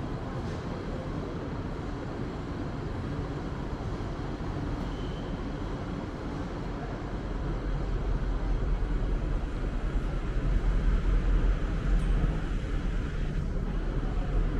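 Outdoor harbourfront ambience: a steady low rumble with general city and harbour noise. The rumble grows louder and gustier about halfway through.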